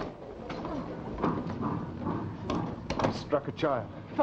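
A door bangs and knocks, with scuffling, as people push through a doorway. Indistinct voices come in near the end.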